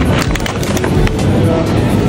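Shopping trolley rolling over a hard store floor: a steady rumble from the wheels, with a run of rattling clicks in the first second. Music plays faintly underneath.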